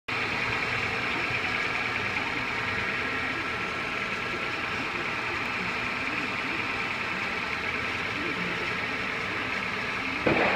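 2003 Honda Accord's 2.4-litre i-VTEC inline-four engine idling steadily.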